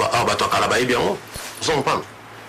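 A man's voice speaking, with a short pause a little past halfway.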